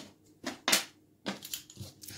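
Draughts pieces being picked up and set down on a wooden board: several short, separate clicks and knocks.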